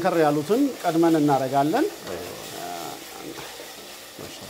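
Diced chicken and onions sizzling in a stainless steel pot as a wooden spoon stirs them. For the first two seconds a voice with long, drawn-out words is louder than the frying.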